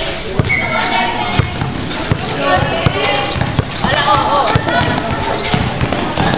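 A basketball bouncing on a court in irregular thuds during play, under many loud overlapping shouting voices from the crowd and players.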